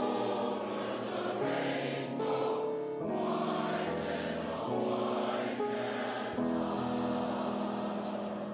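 Mixed choir of men's and women's voices singing a slow song in long, held chords.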